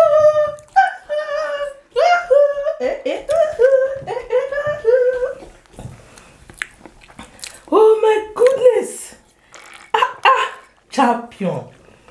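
A woman's high, sing-song voice in short repeated phrases, celebrating a win, with a few sharp clicks in between.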